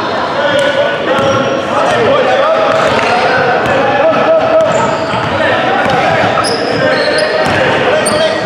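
Basketball dribbled on a hardwood gym floor, the bounces echoing in a large hall.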